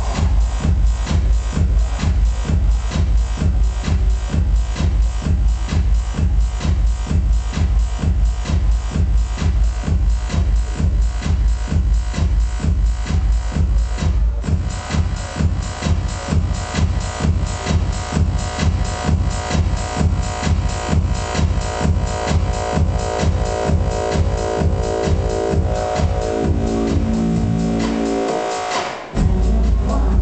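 Electronic dance music in the techno/house style, played loud over a club sound system, with a steady kick drum at about two beats a second. Near the end, held chord tones build up. The bass drops out briefly, and then the full beat comes back in.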